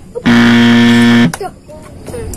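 Quiz-show wrong-answer buzzer sound effect: a single steady low buzz lasting about a second, marking the answer as incorrect.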